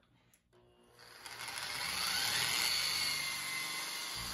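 Electric drum surface-conditioning tool (contour machine) with a red Scotch-Brite wheel starting about a second in, its whine rising as it spins up, then running steadily as it scuffs an aluminum panel toward a brushed finish.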